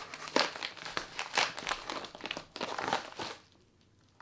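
Kraft-paper bubble mailer and the packing inside it crinkling and rustling as the contents are pulled out, in an irregular run of crackles that stops a little over three seconds in.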